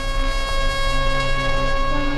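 A single long, steady horn-like note with overtones from the serial's soundtrack, held at one pitch throughout.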